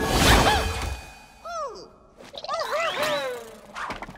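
Cartoon sound effects for a big red cave monster: a heavy crash and whoosh with a deep rumble in the first second, then a run of short rising-and-falling vocal calls from the monster.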